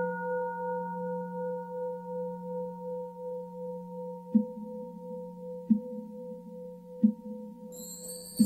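A singing bowl ringing out after a strike, its long tone pulsing slowly as it fades. From about halfway through, soft low knocks come roughly every second and a half, and near the end a high shimmering chime comes in.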